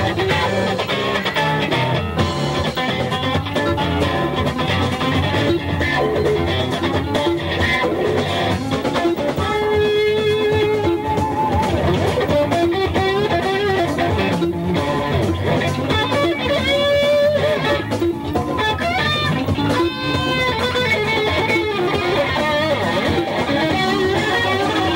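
Live blues played by a band, with an electric guitar soloing in sustained, bent notes over the backing.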